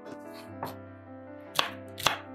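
Chef's knife chopping red bell pepper on a wooden cutting board: a light knock about two-thirds of a second in, then a sharper chop near the end.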